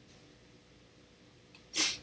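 Near silence, then near the end a single short, sharp breathy burst from a woman: a quick sniff, sneeze or sharp intake of breath.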